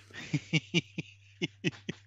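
A man laughing in a run of short, breathy bursts, about four a second, each dropping in pitch.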